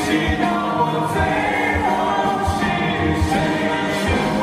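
Music: a male vocal group singing a ballad in sustained harmony over accompaniment with a soft low beat.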